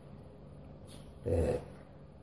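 Mostly a quiet pause over a faint steady hum; about a second and a quarter in comes one short vocal sound from a man, lasting about a third of a second.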